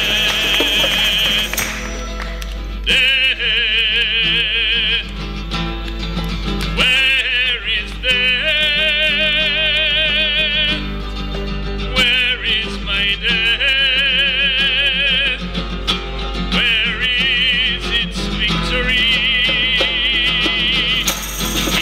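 A sung hymn with instrumental accompaniment: a voice sings phrases of about two seconds each on notes with wide vibrato.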